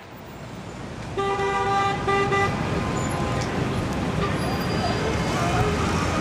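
Busy city street traffic noise, with a car horn honking about a second in: one longer blast, then a short one.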